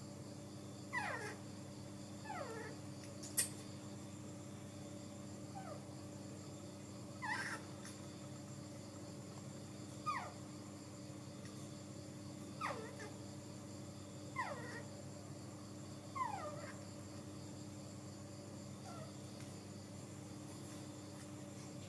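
Baby macaque giving short calls that each fall in pitch, about nine in all, one every two seconds or so, over a steady low hum.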